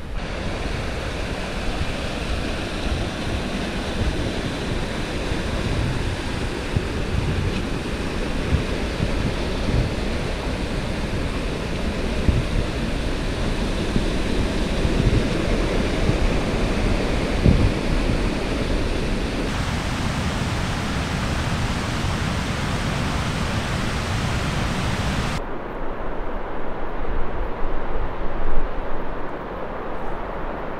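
Steady rushing of a fast mountain creek, with wind buffeting the microphone as a low, uneven rumble. In the last few seconds the hiss falls away, leaving mostly gusty wind rumble.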